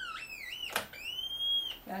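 Syncrometer's audio oscillator sounding a whistling tone that rises and wavers in pitch, broken by a click about three-quarters of a second in, then climbing again and holding before it cuts off near the end. It is read as a positive indication for the tested item.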